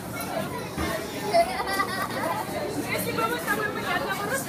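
Chatter of several people's voices, children's among them, none of it clear words.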